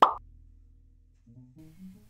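A single sharp pop right at the start, fading within a fraction of a second, followed by a low steady hum.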